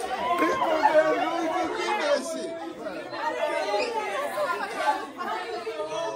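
Several people talking over one another at once: overlapping, indistinct chatter in a hard-floored hall.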